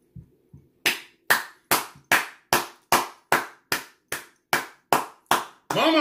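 One person clapping their hands in a steady rhythm, about a dozen claps at roughly two and a half a second. A man's voice comes in near the end.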